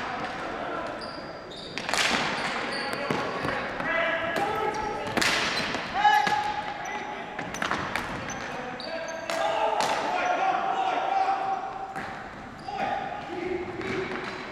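Ball hockey play in a gymnasium: the ball and sticks clack sharply and repeatedly on the hardwood floor, over players' drawn-out shouts and calls and short squeaks of sneakers, all echoing in the hall.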